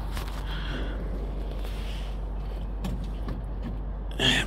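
Handling noise from a phone being moved about: faint rustles and a few light clicks over a steady low rumble.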